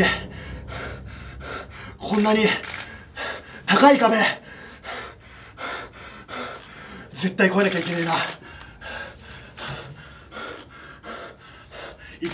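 A man gasping and panting heavily, out of breath after a wrestling match, with a few short strained vocal bursts about two, four and seven seconds in.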